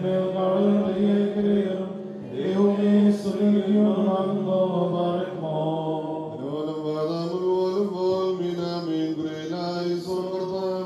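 Voices chanting a liturgical hymn of the Syriac Orthodox service, sung on long held notes that step slowly from pitch to pitch.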